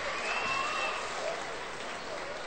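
Indoor volleyball arena crowd applauding after a point, a steady even noise of many hands.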